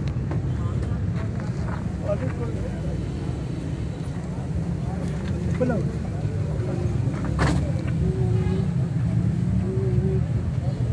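Suzuki Mehran's small three-cylinder petrol engine idling with a steady low rumble, a sharp click about seven and a half seconds in.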